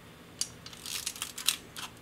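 Mechanism of an Ihagee Exakta VX IIb 35mm SLR being worked by hand, set to 1/125 s. There is a light click about half a second in, then a quick run of small mechanical clicks around the one-second mark that ends in a sharp click, and two lighter clicks soon after.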